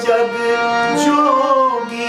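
A man singing a bhajan over a harmonium's steady reed tones, his voice sliding through a sung phrase about a second in.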